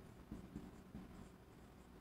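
Faint scratching of a marker writing on a whiteboard.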